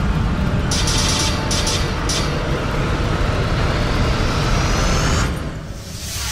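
Cinematic studio-logo sound design: a deep, sustained rumble with a few short bright swishes about a second in, and a slowly rising sweep that drops away suddenly near the end.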